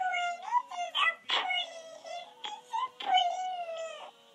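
A child's high-pitched whining, crying-like voice in a string of short wavering wails, complaining about being bullied.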